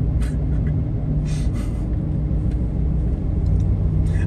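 Steady low rumble of a car driving at road speed, heard from inside the cabin: engine drone and tyre noise, with a couple of brief hisses in the first two seconds.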